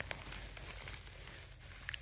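Faint crinkling of broken ice and slush, with a few light clicks, as a hand dips a plastic sample container into an ice-covered pond.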